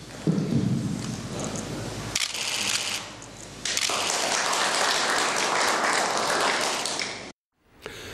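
Applause from the people in the room, a dense crackle of many hands clapping. It swells about four seconds in and breaks off suddenly near the end.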